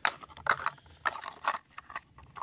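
A plastic toy figure knocking and scraping against a small plastic bucket as a hand pushes it in: a sharp click at the start, then a few short, uneven knocks and rustles.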